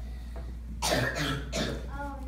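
A person coughing, a quick run of about three coughs starting just under a second in.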